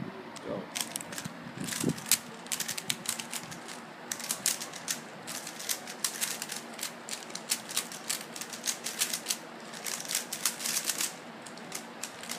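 3x3 Rubik's cubes being turned fast by hand: a rapid, irregular clatter of plastic clicks as the layers snap round, from several cubes at once, starting about a second in.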